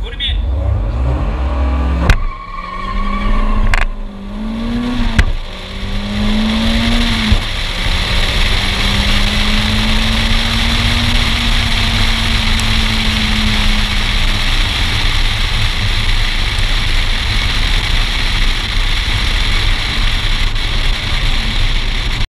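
Turbocharged four-cylinder car launching off a drag-strip start line and accelerating flat out, heard from inside the cabin. The engine note climbs through the gears, breaking sharply at upshifts about two, four and five seconds in. After about eight seconds it levels off and eases, and loud wind and road noise take over.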